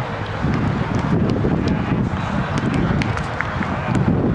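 Outdoor ambience dominated by wind buffeting the camera microphone, an unsteady low rumble, with faint voices and a few sharp ticks.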